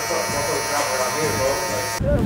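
Electric hair clippers buzzing steadily as a barber works along the hairline during an edge-up.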